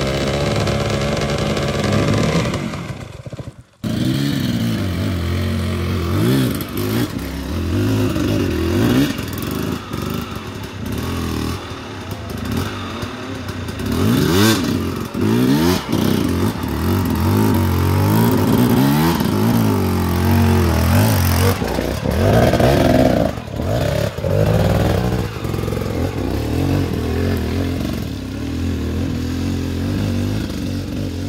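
Enduro dirt bike engines revving hard and easing off under load on steep climbs, in repeated rising and falling surges. The sound drops out briefly a little before four seconds in.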